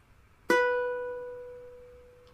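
A ukulele's A string plucked once at the second fret, about half a second in: a single B note that rings on and fades slowly.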